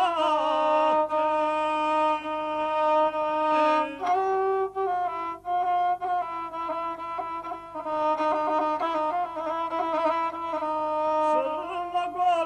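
Gusle, the single-stringed bowed folk fiddle of a guslar, playing a steady, nasal melody of long held notes that step to new pitches every few seconds, as accompaniment to an epic song.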